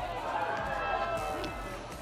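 A voice calling out as the hit ball is played, the words unclear, over outdoor ballpark background noise.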